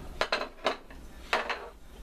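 About four light clinks and knocks of metal kitchenware, around a stainless steel pan on the stovetop.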